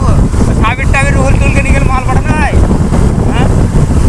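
Loud, steady wind noise on the microphone of a moving motorcycle, with the bike's engine running underneath.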